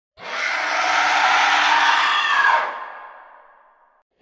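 A harsh, distorted scream sound effect, held for about two and a half seconds, then fading away in a long reverberant tail.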